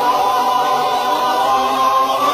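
Background music of a choir singing long, held notes.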